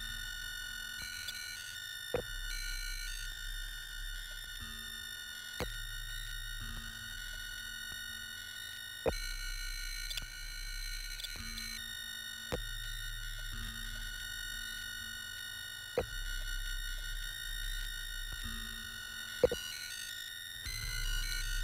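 Minimal live electronic music of pure sine tones: high tones held steady over low tones that switch on and off. A sharp click comes about every three and a half seconds, six in all.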